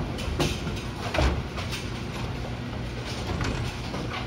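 Brunswick A-2 pinsetter machinery running quietly: a steady low hum with a few mechanical clicks and clunks.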